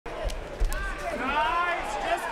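Two sharp thuds, blows landing in an MMA cage bout, a third of a second apart. Then a man's voice calls out in a rising shout.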